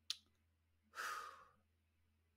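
A man's short mouth click, then about a second in a soft sigh of breath lasting about half a second, the hesitant breath of someone pausing to think.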